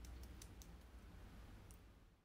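Near silence with a low background rumble and a few faint, sharp clicks, a cluster in the first half-second and one more near the end.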